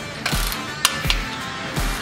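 Ratchet of a torque wrench with a hex bit clicking as a brake caliper bolt is tightened to 30 Nm, with a couple of sharp clicks about a second in. Background music with a steady beat plays over it.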